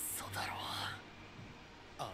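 A soft, breathy whisper of a voice in the first second, then a quiet stretch.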